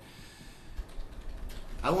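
A pause between a man's sentences, with a few faint light clicks like typing over a low room hum; his voice starts again near the end.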